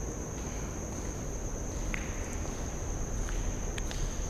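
Steady, high-pitched trill of crickets, with a low rumble underneath and a few faint clicks.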